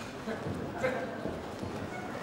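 Crowd voices and chatter around a boxing ring, with two short thuds from the fighters in the bout, the louder one a little under a second in.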